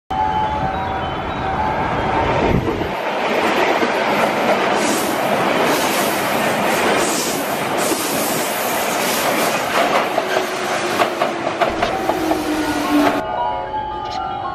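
Limited express electric train passing at speed close by, a loud continuous rush of the cars going past, with a quick run of wheel clicks over rail joints and a slowly falling tone in the last few seconds. The rush cuts off abruptly shortly before the end, leaving fainter steady tones.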